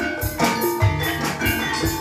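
Javanese gamelan music accompanying an ebeg hobby-horse dance: struck bronze keyed metallophones ringing in interlocking notes over low kendang drum hits, with a recurring high metallic shimmer.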